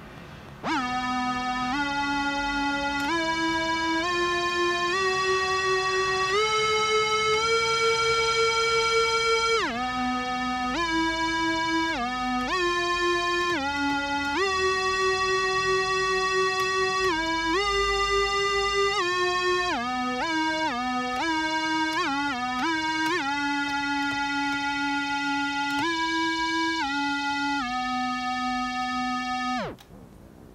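DIY Arduino-controlled cassette tape synth: a Sony TCM-150 cassette recorder playing back one recorded FM string note, with each MIDI key setting a different tape speed, so the pitch steps from note to note with short slides between them, within one octave. It starts about a second in, climbs through a rising run of notes, plays some quick passages, and ends with a downward pitch slide as it cuts off.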